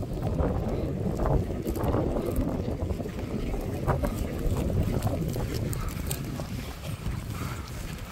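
Wind rumbling on the microphone, with scattered footsteps on grass and faint voices.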